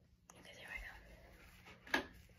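A faint whispered voice, then a single sharp click just before the end.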